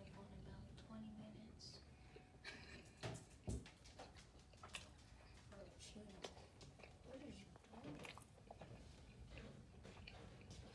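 Near silence: faint, low voices with a couple of brief soft knocks about three seconds in.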